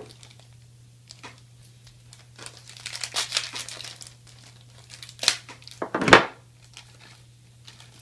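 Small plastic parts bag crinkling as it is handled, with a few sharp clicks and a louder knock about six seconds in.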